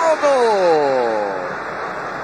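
A male TV football commentator's drawn-out exclamation, one long call whose pitch slides steadily down over about a second and a half as a shot on goal is stopped by the goalkeeper, over continuous stadium crowd noise.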